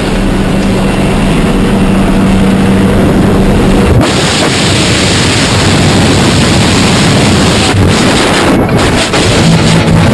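Steady drone of a jump plane's engine at the open door, then from about four seconds in a loud rush of freefall wind noise on the microphone.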